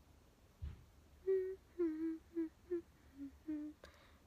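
A woman humming a short tune of about eight brief notes, starting about a second in. A low thump comes just before the humming, and a sharp click near the end.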